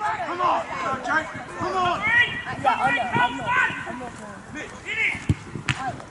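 Men's voices calling and shouting during a football match, with a single sharp knock near the end.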